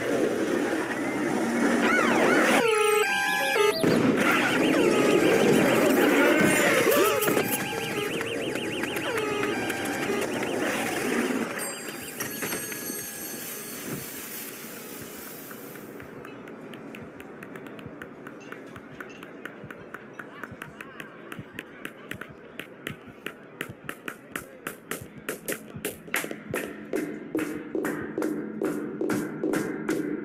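Soundtrack of an animated sensory-overload simulation: a dense, loud mix of city noise and overlapping voices, with a gliding pitched sound about three seconds in. The mix thins out, and from about halfway a series of sharp clicks starts, speeding up and growing louder.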